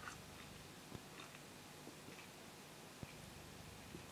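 Near silence, with faint sips and swallows of ale drunk from a glass and two soft clicks, one about a second in and one about three seconds in.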